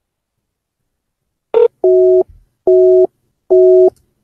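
Telephone busy tone from a voice-call app: a short blip, then a steady two-note beep repeating four times, each about half a second long and a little under a second apart, signalling that the call did not go through.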